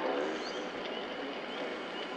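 Steady steam hiss from the sound system of an MTH model C&O Allegheny steam locomotive standing at idle, just powered up and not yet moving.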